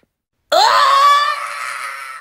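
A loud, high scream voiced for the little figure's reaction to the lemon's sourness. It starts about half a second in, rises in pitch, holds one steady note, and fades near the end.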